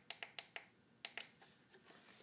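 A handful of faint, sharp clicks from the buttons on a studio strobe's back panel as they are pressed to switch on its modeling lamp.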